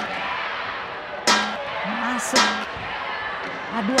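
Badminton rackets striking a shuttlecock in a fast, flat drive exchange: sharp cracks about a second apart, over crowd murmur in a large hall.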